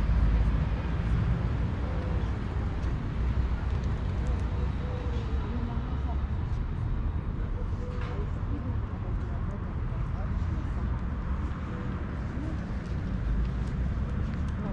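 Outdoor street ambience: a steady low rumble of nearby road traffic, with faint voices in the background.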